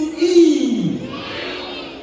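A voice calling out a long drawn-out note that slides down in pitch, over the noise of a crowd of guests.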